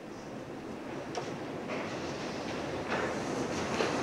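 Lecture hall background noise: a steady rushing hiss and rumble with no speech, slowly growing louder.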